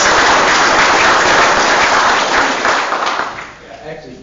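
Audience applauding, the clapping dying away about three and a half seconds in.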